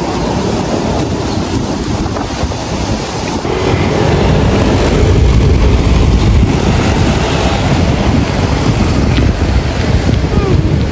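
Wind buffeting the microphone through an open window of a moving car: a loud, steady rush that grows louder about four seconds in.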